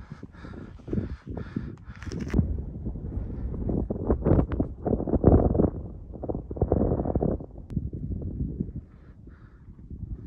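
Footsteps of a hiker picking across granite rock and scree, an uneven series of knocks and scuffs, with gusts of wind rumbling on the microphone, loudest in the middle.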